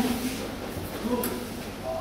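Short, scattered fragments of men's voices in a large hall, with a brief click about a second in.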